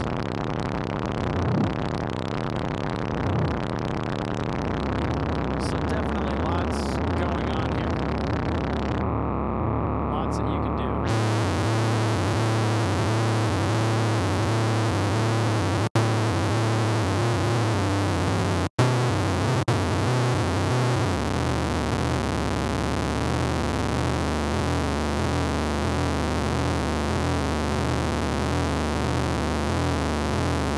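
Native Instruments Monark, a Minimoog-style software synthesizer, sounding a low, modulated, noisy tone mixed with hiss. About nine seconds in the top end drops away, and about two seconds later it comes back as a bright hiss. The sound cuts out very briefly twice, near sixteen and nineteen seconds.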